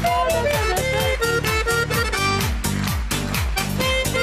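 Bayan (Russian button accordion) playing a lively, well-known tune with a fast, steady beat.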